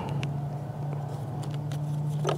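Steady low hum of an idling engine, with a few faint clicks and crinkles of a paper instruction sheet being unfolded by hand.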